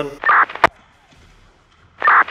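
Two-way radio sound effect: a short chirp followed by a sharp click about half a second in, closing one transmission, then a quiet stretch; near the end the same chirp opens the next transmission.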